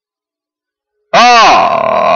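Silence for about the first second, then a horse-race caller's voice breaks in loudly with a long, drawn-out call as the field leaves the starting gate.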